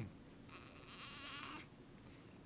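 A newborn baby's faint, thin, high-pitched whimper: one wavering squeak starting about half a second in and lasting about a second.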